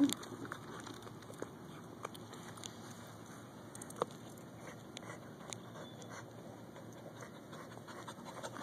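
Quiet scuffing of a Pembroke Welsh Corgi shifting and lying in a wet mud hole, with scattered faint clicks and one sharper tick about four seconds in.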